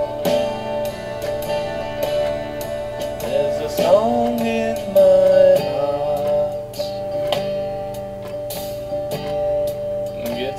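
Instrumental break in a song: guitar playing held notes, with a few notes bending upward in pitch about four seconds in and a loud sustained note just after.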